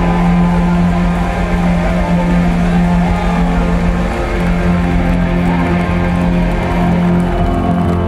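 Rock band playing live, loud, led by electric guitars with long held, ringing notes.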